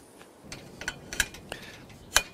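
A few light metallic clicks from a bracing bar's clamp being fitted onto a tube of an aluminium scaffold, about a second in.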